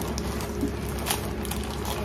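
Powdered cake mix pouring from a plastic bag into a metal mixing bowl, with soft rustling of the bag.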